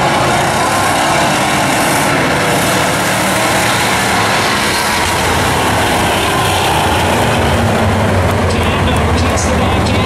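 Engines of several bomber-class stock cars running on the track, a loud, steady mix of engine noise whose low drone grows stronger in the second half.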